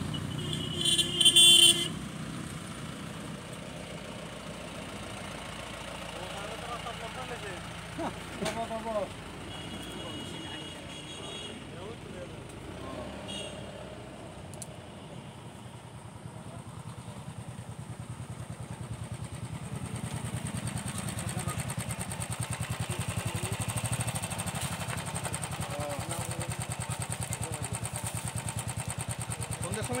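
A vehicle engine running steadily, growing louder in the second half, with a short loud steady tone about a second in and a few faint voices.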